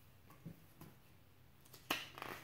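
A picture book being handled on a table: two faint soft taps, then a sharper slap of a page or cover just before the end as the book is turned over to close.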